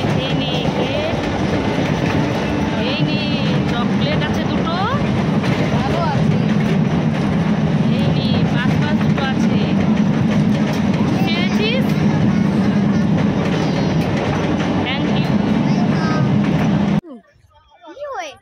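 Steady low rumble of a moving passenger vehicle heard from inside, with voices faintly in the background; it cuts off abruptly about a second before the end.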